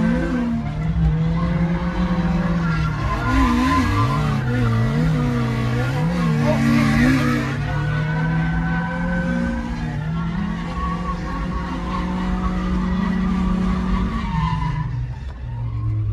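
Car engine, heard from inside the cabin, held at high revs through a drift with tire squeal. Around the middle its pitch bobs up and down several times as the throttle is worked, with the tire noise strongest then. Near the end the revs fall.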